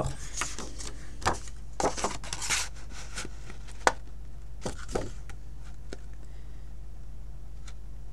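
Sheet of card stock rustling and sliding as it is handled and fed into a large handheld daisy paper punch, with scattered light clicks and knocks of the punch's plastic body; one sharper click about four seconds in.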